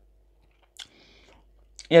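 Quiet mouth sounds of a woman chewing, with one short sharp click a little under a second in. A woman's voice starts right at the end.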